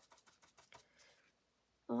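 Ink blending brush dabbing on a paper card through a plastic stencil: a quick run of light taps for about the first second, then it stops.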